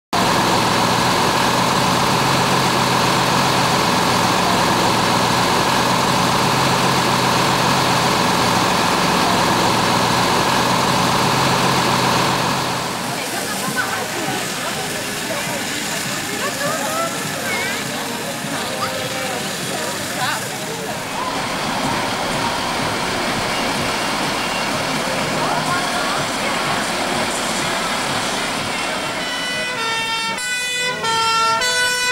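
Engine of a 1963 Austin fire engine running steadily and loudly for about the first twelve seconds, followed by a quieter stretch with voices in the background. Near the end the truck's two-tone siren starts, alternating between two pitches.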